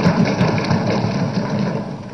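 Many assembly members thumping their desks in applause: a dense, steady rattle of knocks on wood that eases off near the end.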